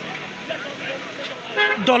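A vehicle horn tooting briefly, about one and a half seconds in, over steady busy-street traffic noise.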